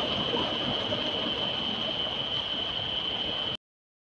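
Steady background ambience with a continuous high-pitched tone, cutting off abruptly about three and a half seconds in.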